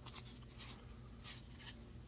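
Faint rustling and light scuffs of cardstock game cards being handled and picked up, a few short soft sounds scattered through an otherwise quiet room.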